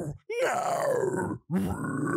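A man voicing two harsh, growled metal-vocal phrases, each about a second long, the vowel shape sweeping closed and open again within each one. They demonstrate a deathcore singer's vocal movements.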